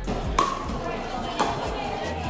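Two sharp pops about a second apart as paddles hit a plastic pickleball during a rally, with background voices murmuring.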